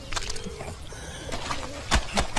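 Wet, soapy laundry being scrubbed and slapped by hand: a run of irregular sharp slaps and squelches, the loudest just before the end. A bird coos faintly in the background.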